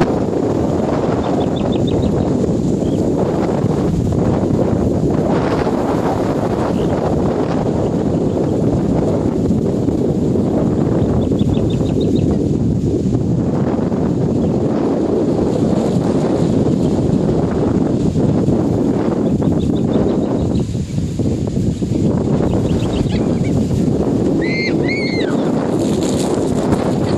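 Wind blowing across the microphone: a loud, steady rumble with no break. A few faint, brief high chirps are heard, most clearly near the end.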